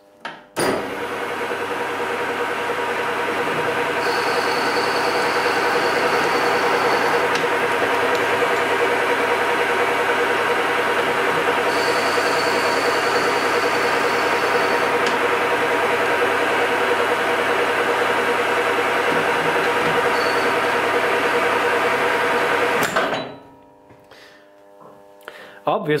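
EMCO V13 metal lathe running under power while single-point cutting a 1 mm pitch thread: a steady whine from the motor and gear train, with a faint high squeal that comes and goes a few times. It shuts off sharply near the end.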